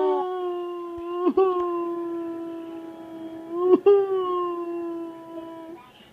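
Mock crying in pain after a pretend injection: a voice wailing in three long, held moans. Each moan starts with a brief upward swoop and then stays at nearly one pitch.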